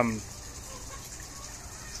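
A man's drawn-out, falling 'um' trails off at the start, then only low, steady background noise with no distinct event.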